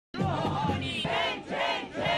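Crowd of protesters chanting a slogan together, loud shouted syllables repeating about twice a second.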